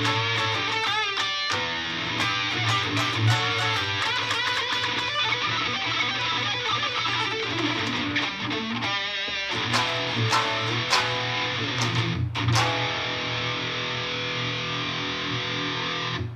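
Electric guitar played through an amp as a warm-up: a stream of quick picked notes, with a wavering held note about nine seconds in. Near the end a chord is struck and left ringing until the sound stops abruptly.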